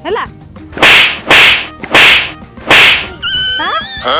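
Four loud, whip-like slapping smacks, each with a short fading tail, spaced about half a second to three-quarters of a second apart, as the helmet is struck in the game.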